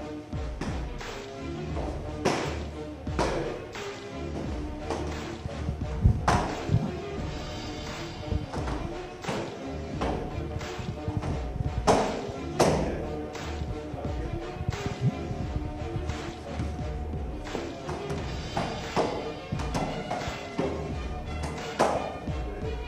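Background music, over which kicks and punches smack into hand-held strike pads and focus mitts at irregular intervals, a dozen or so sharp hits, the loudest about six and twelve seconds in.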